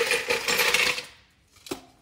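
Pouring from a plastic cup into a blender cup with ice in it, a rushing, even noise that stops about a second in. Near the end comes a single light knock as the cup is set down on the counter.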